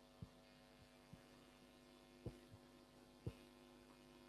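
Near silence: a steady low electrical hum, with four faint, soft thumps about a second apart.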